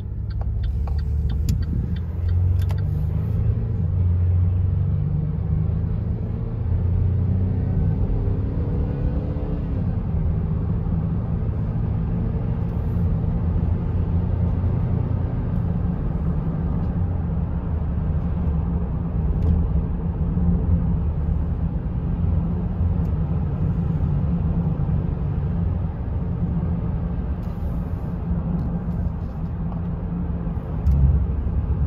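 Cabin sound of a 2011 Chevrolet Traverse's 3.6-litre V6 accelerating on the road. The engine note climbs and drops back through the gear changes over the first ten seconds or so. It then settles into a steady cruise dominated by low road and tyre rumble. The engine runs smoothly, with no knocks or ticks.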